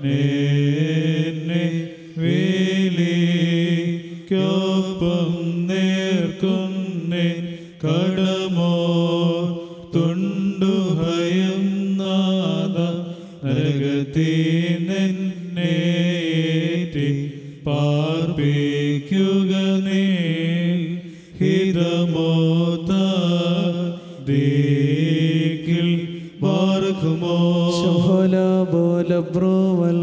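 Men's voices chanting the Syriac Orthodox evening prayer in a low, sustained liturgical chant, sung in phrases of about two seconds with short breaths between them.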